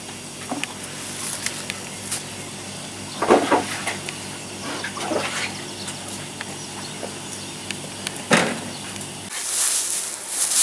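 A steady low machine hum, with a few short, louder sounds over it, the loudest near the end. The hum stops just before the end.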